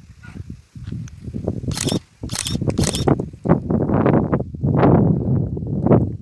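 Wind buffeting a cellphone microphone in gusts, a loud uneven low rumble, with a few sharp crackles about two seconds in.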